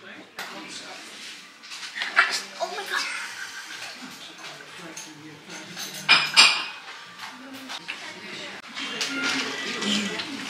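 Dishes and cutlery clinking, with sharp clinks about two seconds in and a louder cluster around six seconds in.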